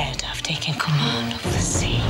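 Film trailer soundtrack: music with a hushed, whispering voice under it.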